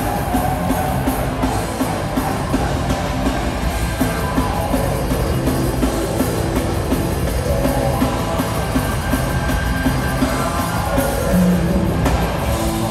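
Live rock band playing in a theatre, with electric guitars and a drum kit.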